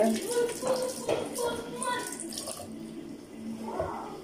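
Kitchen tap running water into a sink for about two and a half seconds, then stopping.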